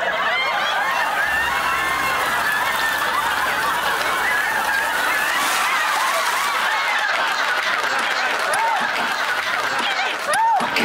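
Studio audience laughing loudly and without a break, many voices overlapping.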